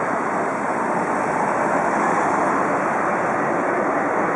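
Steady urban street noise of traffic and a large group of cyclists riding past: an even rush with no single event standing out.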